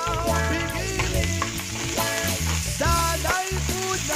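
Sliced onions and garlic sizzling in hot oil in a nonstick frying pan as they are stirred with a silicone spatula, over background music with singing.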